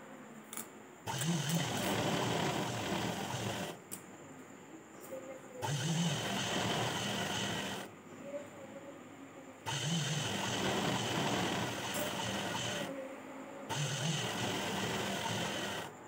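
Sewing machine stitching cloth in four runs of two to three seconds each, with short quiet pauses between runs.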